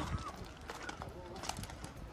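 Footsteps on loose gravel, a few irregular steps, with people talking nearby.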